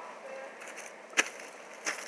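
Two short, sharp crunches about two-thirds of a second apart, like footsteps on gravel and dry leaves, over a faint background.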